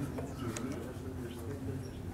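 Quiet room tone with a faint, low murmur of a voice and a few soft clicks.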